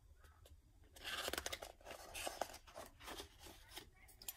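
Paper pages of a picture book being handled and turned: a faint papery rustle with crisp crackles, starting about a second in.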